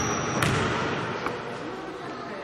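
A basketball bouncing on a sports hall floor: two sharp bounces in the first half second, then a fainter knock just over a second in.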